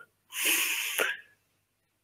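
A man drawing a quick breath in close to a headset microphone, a short breathy hiss of under a second between sentences.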